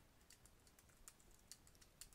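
Faint, irregular keystrokes on a computer keyboard as code is typed.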